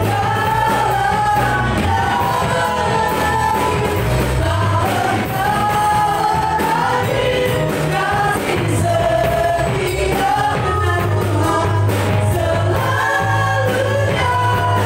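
Live worship band: several singers in unison and harmony over electric guitar, bass, keyboard and drums, singing a gospel song in Indonesian with a steady bass line.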